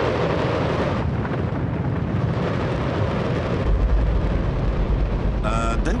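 Space Shuttle main engine firing on a test stand: a loud, steady rocket roar, with a deep rumble growing heavier about four seconds in.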